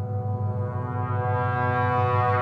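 Ominous background music: a low sustained drone chord that slowly grows louder and brighter.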